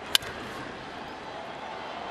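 A single sharp crack of a bat hitting a pitched baseball just after the start, over steady ballpark crowd noise.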